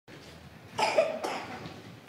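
A person coughing: two short coughs about half a second apart.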